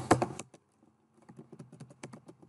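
Typing on a computer keyboard: a few sharp key clicks at the start, a short pause, then a quick run of keystrokes.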